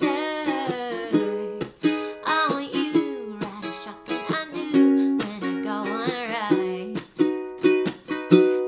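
Baton Rouge tenor ukulele, capoed, strummed in chords while a woman sings over it.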